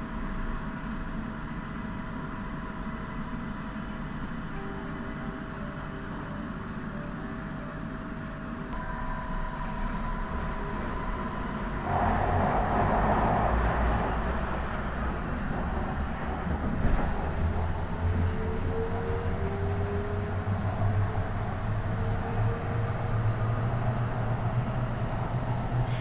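Metro train car interior: a steady hum with thin steady tones, then about twelve seconds in the running noise grows suddenly louder as the train gets under way, with a low rumble and a faint rising whine of the traction motors.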